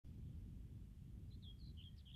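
Faint outdoor ambience with a low, steady rumble; from about halfway through, a small bird gives a quick string of short, high chirps.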